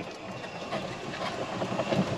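Steady rolling noise from an electric golf cart moving slowly, its tyres running over pavement.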